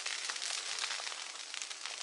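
Burning dry brush crackling: a steady hiss dotted with many small, sharp crackles.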